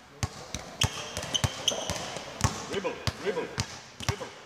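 Basketball being dribbled hard on an indoor court floor, a steady run of bounces at about two to three a second.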